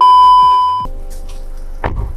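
Video transition sound effect: a loud, steady 1 kHz test-tone beep of the kind played with TV colour bars, lasting just under a second and cutting off suddenly, followed by a quieter noisy hiss.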